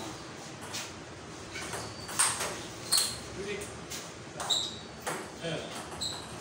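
Celluloid-type table tennis ball being struck back and forth in a doubles rally: sharp tocks of paddle and table hits at an uneven pace, about six in all, the loudest pair about two and three seconds in.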